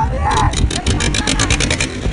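Low rumble of a boat motor and wind on the microphone, with a shouted voice near the start and a fast, even run of sharp clicks, about nine a second, lasting about a second and a half.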